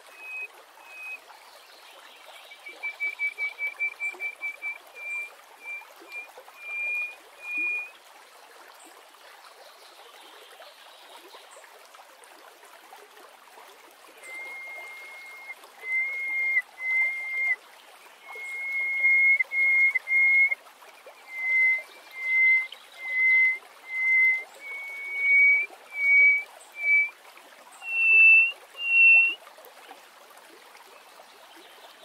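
Greater hoopoe-lark singing: clear piping whistles in two phrases. The first, from about two seconds in, is a quick run of short notes that slows into longer ones. After a pause, the second is a long series of evenly spaced whistles that climb in pitch toward the end. A steady hiss runs underneath.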